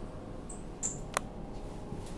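Two short, high squeaks and then a single sharp click over a steady low hum inside an elevator car.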